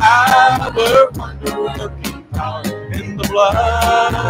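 Live church worship band playing a song, with a sustained melody line over bass and a steady beat.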